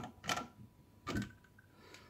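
A couple of short, quiet plastic clicks and knocks as a washing machine spigot is unscrewed and pulled off a plastic sink trap.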